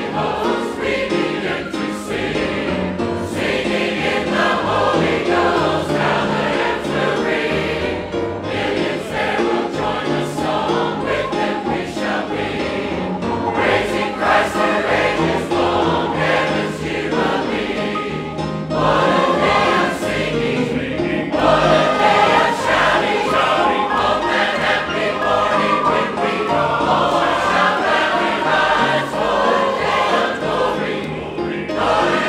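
A large congregation singing a gospel hymn together from hymnals, with grand piano accompaniment.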